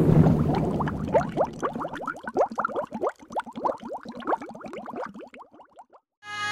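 Bubbling sound effect for an animated logo intro: a low whoosh swells in, then a rapid stream of bubble blips, each a short upward pitch sweep. The blips thin out and fade away near the end.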